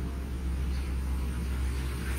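A steady low hum with a faint background rumble during a pause in speech.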